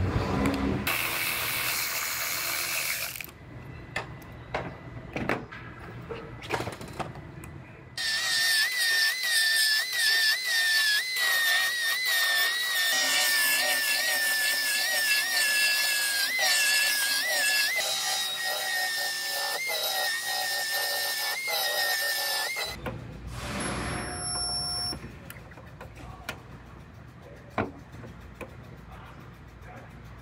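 A power tool runs for a couple of seconds at the start, followed by a long stretch of background music with a high, wavering melody that stops suddenly about three-quarters of the way through. After that come quieter workshop sounds.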